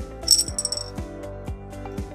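A single bright clink from a small glass bottle puzzle as it is tipped in the hands, ringing briefly for about half a second, over background music with a steady beat.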